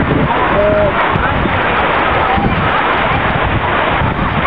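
Creek water rushing steadily down a narrow sandstone water chute, with people's voices and calls over it.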